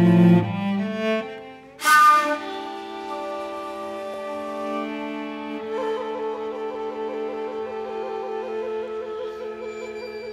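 Live chamber music for violin, cello and shakuhachi. Low cello notes come first, then a sharp, loud accented attack about two seconds in. After it come long held notes, one with a wide vibrato from about six seconds on.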